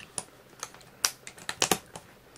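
A series of small, sharp clicks as the battery door of a Canon AE-1 film SLR is worked and snapped shut, the door latching properly.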